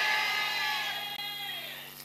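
A held chord of several steady tones, fading away gradually over about two seconds, with some of the tones dipping slightly in pitch near the end.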